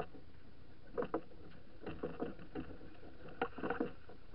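Irregular knocks and clicks aboard a racing sailing yacht, in three short clusters: about a second in, around two seconds, and near the end.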